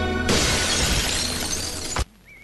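A sudden loud crash about a third of a second in, cutting off the music and dying away slowly over a low rumble for about a second and a half before it stops abruptly.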